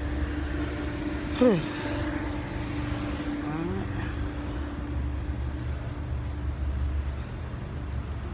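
A motor vehicle's engine running steadily nearby, a low rumble with a steady hum over it for the first few seconds.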